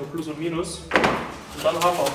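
A single loud knock about a second in, with talking before and after it.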